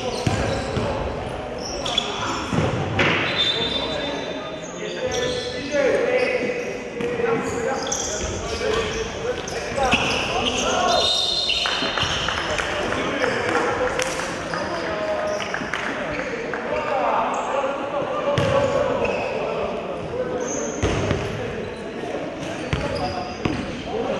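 Indistinct voices mixed with repeated short knocks and clatter, echoing in a large room.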